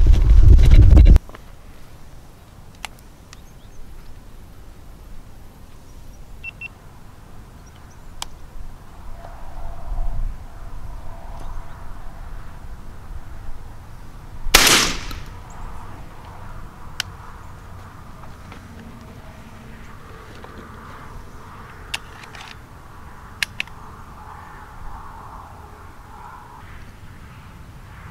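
A single shotgun shot fired at doves about halfway through, sharp with a short echo. In the first second there is a loud low rumble of the microphone being handled.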